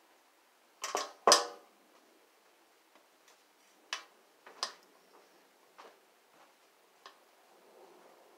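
Small clicks and taps of jewelry-making tools and metal findings handled over a glass tabletop: a quick cluster about a second in, the loudest with a short metallic ring, then single light ticks every second or so.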